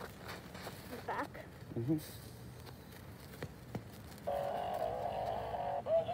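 A burning toy Santa figure: faint crackling and ticks, then about four seconds in a steady droning tone sets in, the figure's electronics still running as it burns.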